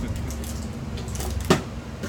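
A single sharp knock about one and a half seconds in as the 7-inch rosin collection plate is set down on the table, with faint handling of cardboard packaging over a steady low hum.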